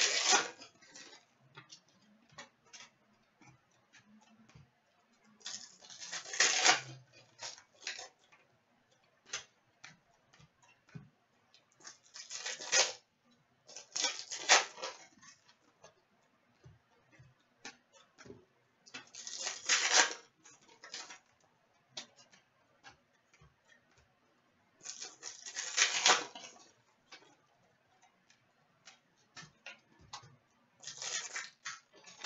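Hockey trading cards being handled: a short rustling swish about six times, every few seconds, with light clicks and taps in between as cards are set down on a glass counter.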